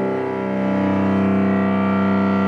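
Cello bowing a long, sustained note that swells slightly and then holds steady.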